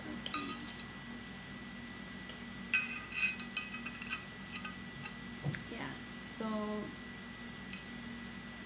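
A scattering of sharp light clinks of china or glass being handled, over a faint steady hum.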